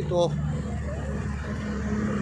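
A motor vehicle's engine running at the roadside, a steady low hum, under a man's single word at the start and faint voices.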